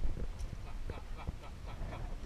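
A man's odd calling sounds made with the mouth to attract a crocodile: a run of short calls.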